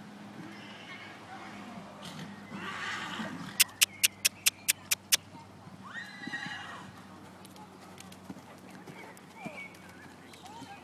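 A horse whinnying, with a quick run of eight sharp, loud clicks, about five a second, in the middle as the loudest sound.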